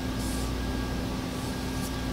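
Room tone: a steady low hum with a faint brief hiss a little after the start.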